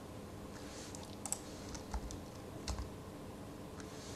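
A few scattered keystrokes on a computer keyboard, isolated clicks about every half second to second, over a faint steady background hiss.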